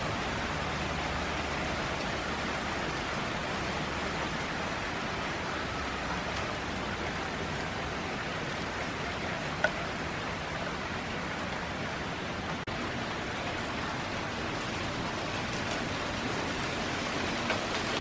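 Heavy rain pouring down on the street and pavement, a steady even hiss of downpour. A single brief click sounds about ten seconds in.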